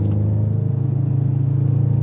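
Audi RS7 C8's twin-turbo V8 pulling in third gear under light acceleration, heard from inside the cabin as a deep, steady drone through an unsilenced Milltek exhaust.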